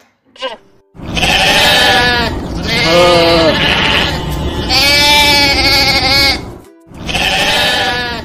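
A herd of goats bleating: several long, wavering bleats one after another, starting about a second in, with a short gap near the end before another.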